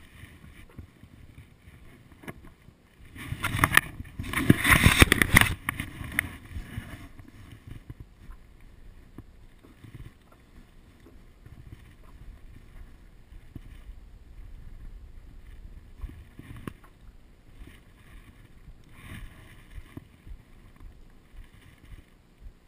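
Small water sounds and knocks around a stand-up paddleboard drifting on calm sea. A few seconds in comes a louder noisy rush lasting about three seconds.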